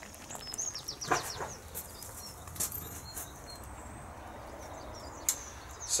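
Small birds chirping, with a run of quick falling chirps about a second in, over a faint steady background and a few scattered soft clicks.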